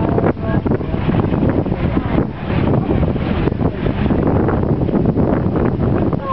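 Strong wind buffeting the microphone with a loud, uneven rumble that covers the sound of a pre-1934 American sedan driving slowly past.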